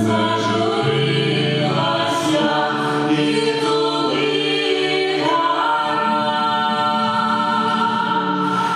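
Small mixed ensemble of male and female voices singing a folk song in close harmony, holding long chords, with a nylon-string acoustic guitar playing along underneath.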